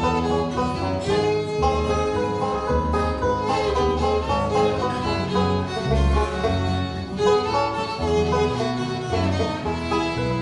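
Instrumental break of a bluegrass song: a fiddle plays the lead over banjo and guitar accompaniment, with no singing.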